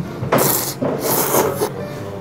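A person slurping thick tsukemen noodles dipped in a fish-and-pork-bone dipping broth: two loud slurps, each about half a second long.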